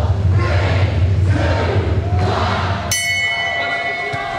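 Arena crowd noise with music and a steady low hum under it, cut off about three seconds in by a single strike of the boxing ring bell, whose tone keeps ringing. The bell signals the start of the round.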